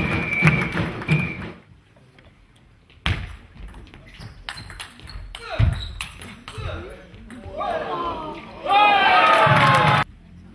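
Table tennis ball tapping and clicking on bat and table in a large hall, a few sharp knocks a couple of seconds apart. Voices at the start, and a loud voice in the last second.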